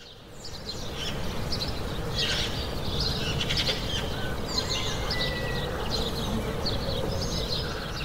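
Birds chirping over a steady low outdoor rumble, fading in over the first second and easing off near the end.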